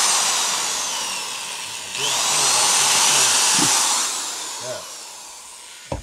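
Hand-held electric drill boring a small hole through a plastic five-gallon bucket lid, in two runs. The first is already going and fades out, then a second burst starts about two seconds in, with the motor's whine falling away after each run.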